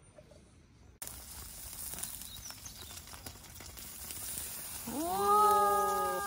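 Steak sizzling on a charcoal grill, with small crackles, starting suddenly about a second in. Near the end comes a drawn-out voiced call, held level for about a second and a half.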